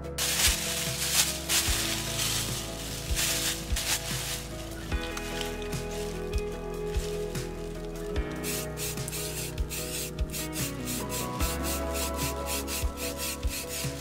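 Aerosol spray paint hissing onto glass mason jars in long sprays during the first few seconds. Background guitar music runs underneath throughout.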